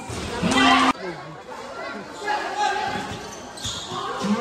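A basketball bouncing on a painted concrete court during play, with players' voices. A loud, held shout in the first second cuts off abruptly.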